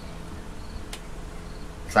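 A steady low electrical buzz of room tone during a pause in speech, with one faint click about a second in; speech resumes near the end.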